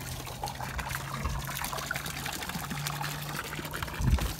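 Water trickling and splashing steadily into a garden pond as it is being filled, with a low steady hum underneath.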